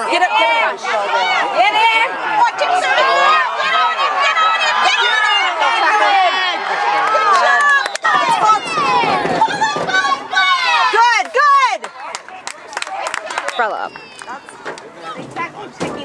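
Many spectators' voices talking and calling over one another, no single voice clear; the chatter thins out and gets quieter in the last few seconds.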